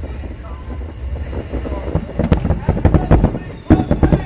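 Fireworks going off: a quick run of bangs and crackles from about two seconds in, the loudest near the end, over a steady low rumble.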